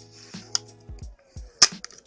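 Background music with a beat, over plastic crinkling and clicks from handling a clear plastic card storage cube and the wrapped pack inside it. The loudest sound is a single sharp click about three quarters of the way through.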